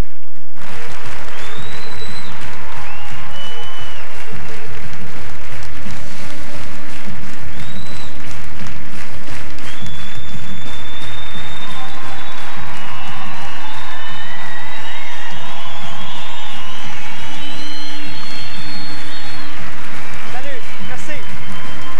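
A large theatre audience applauding, with music playing over it. Steady low notes and high gliding tones sit on top of the clapping.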